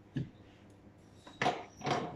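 Kitchen utensils handled on a countertop: a light tap early, then two brief, louder clatters in the second half as a silicone spatula is put down beside a plastic chopper bowl.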